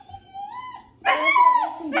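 Labradoodle puppy whimpering: a thin, high whine that rises in pitch during the first second.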